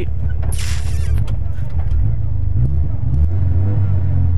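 A Fiat 600 Kit rally car's small four-cylinder engine running heard from inside the cabin, held ready at a stage start before the countdown, with the revs shifting slightly in the second half. A brief hiss about half a second in.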